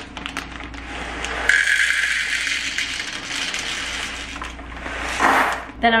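Dried popcorn kernels being poured: a steady rattling hiss starts about a second and a half in and lasts about three seconds, followed by a shorter rush of kernels about five seconds in.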